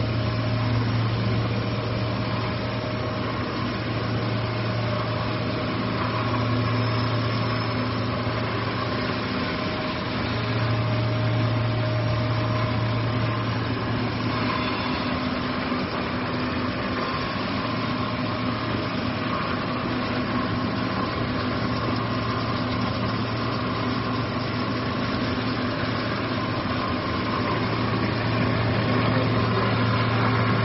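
Steady running noise of a stretch film extrusion line: an even mechanical hum with a strong low drone and a faint higher whine, from the machinery's motors and rollers. It grows a little louder near the end.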